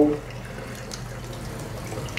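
Water running steadily from a chrome waterfall bathroom faucet into the sink, an even rush with no breaks.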